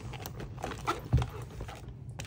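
Handling noise as a small plastic instant camera is pushed into a leather handbag: scattered soft rustles and light knocks, with one dull knock about a second in.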